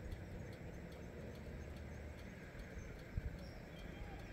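Faint, uneven low rumble of wind buffeting the microphone, with a brief louder bump a little after three seconds in.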